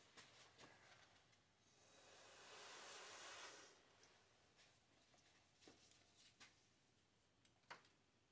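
Breath blown through a drinking straw onto wet acrylic paint: one soft hiss of about two seconds near the middle, with a few faint clicks and taps around it and otherwise near silence.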